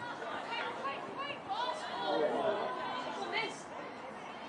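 Indistinct overlapping voices of players and spectators calling and chattering during open play, with a few high shouts rising above the rest.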